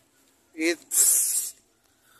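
A person's voice: a short pitched vocal sound, then a drawn-out hissed 'sss' or 'shh' lasting about half a second.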